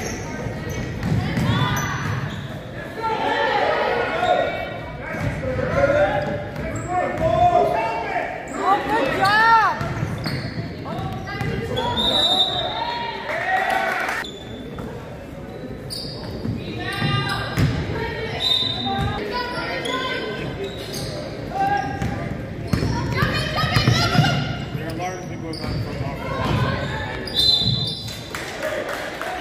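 Basketball game in a gym: a basketball bouncing on the hardwood floor as it is dribbled, mixed with players' shouts and calls that echo around the hall.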